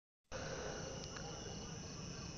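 Dead silence for a moment, then a faint steady hiss with a thin high-pitched whine: room tone picked up by a phone's microphone during a screen recording.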